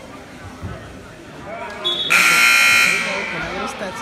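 Gym scoreboard horn at a basketball game sounding once, a harsh buzz just under a second long, about two seconds in, over crowd chatter.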